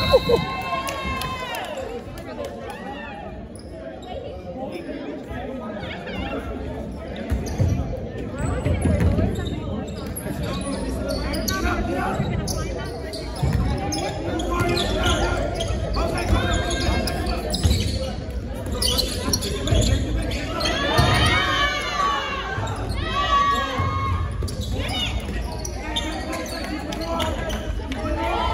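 Basketball bouncing on a hardwood gym floor during play, with repeated short thuds. Players' and spectators' voices and shouts echo in the gym, louder a little past the middle.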